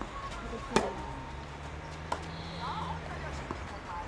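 Tennis ball struck by rackets during a rally: a sharp pop about a second in, the loudest sound, and a softer one about two seconds in.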